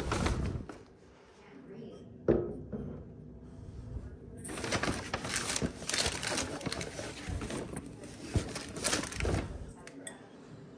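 Paper shopping sack rustling and crinkling as it is handled, with a single knock about two seconds in. The rustling returns, busier and louder, for most of the second half.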